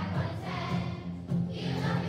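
Children's choir singing together, accompanied by acoustic guitars.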